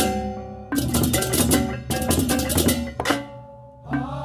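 Balinese baleganjur gamelan ensemble playing fast interlocking strokes of clashing cymbals, gongs and drums in dense bursts, ending on a last stroke about three seconds in that rings out and fades.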